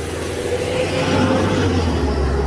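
Box delivery truck driving past on the street: a steady engine hum with road and tyre noise that swells about a second in and eases off.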